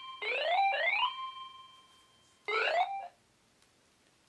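Mobile phone ringtone: electronic rising sweeps, two quick ones ending in a held tone about a second in, then one more sweep at about two and a half seconds before it stops.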